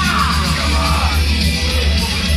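Live thrash metal band playing loudly, with a voice yelling over the music.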